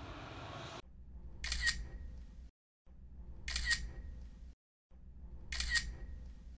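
Camera shutter click, heard three times about two seconds apart, each with a short high tone. It is laid over edited shots, with abrupt cuts to silence between them.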